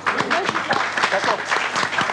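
Studio audience applauding, a dense steady patter of many hands clapping, with some voices mixed in.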